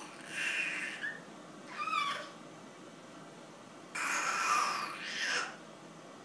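A baby's breathy, high-pitched laughing squeals in three bursts, the longest about four seconds in.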